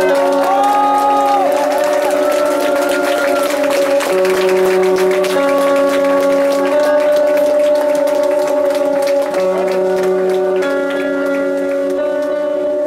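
Live band music: electric guitar holding slow, sustained chords that change every second or two, with a few gliding, bent notes in the first couple of seconds.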